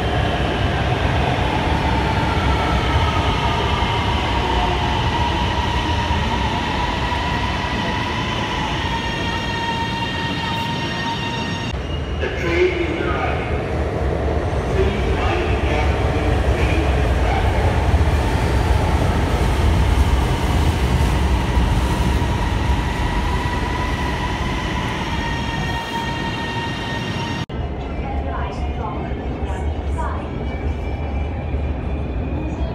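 Electric metro train at an elevated station platform: a steady low rumble with high whining tones from its motors, one whine falling in pitch in the first few seconds as the train slows. The sound breaks off sharply twice.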